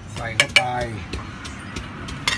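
Kitchen utensils tapping and clinking at a food stall: a quick run of light ticks, with two louder clacks about half a second in.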